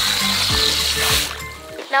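Water from a garden hose nozzle spraying into a plastic sandbox, a steady hiss that stops a little over a second in, over background music.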